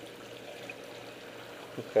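Water trickling and running down the standpipe of an aquaponics grow bed's auto-siphon as the siphon starts to drain the bed, with a faint steady hum underneath.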